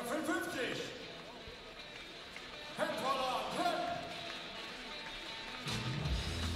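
A voice speaks two short phrases in a large hall, then rock music with electric guitar starts just before the end.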